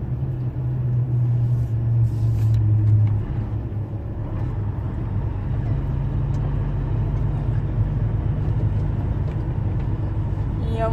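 Engine drone and road noise inside a moving vehicle's cab, steady throughout, with the engine note stronger for the first few seconds and dipping slightly in pitch about three seconds in.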